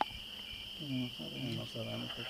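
Crickets chirping in a steady high trill, with a faint voice speaking during the second half.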